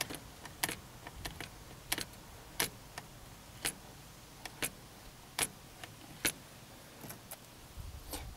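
Lever-action grease gun being pumped through a locking grease coupler onto a zerk fitting, forcing grease into the linkage: a steady series of sharp clicks, about one every three-quarters of a second.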